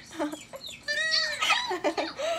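A girl laughing in high-pitched giggles.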